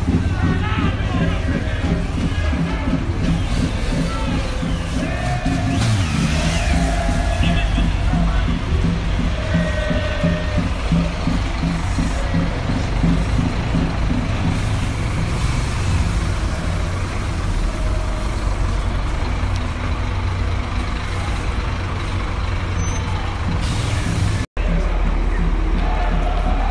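Diesel engine of a double-decker tour coach running as the coach pulls in and manoeuvres, a steady low rumble under voices.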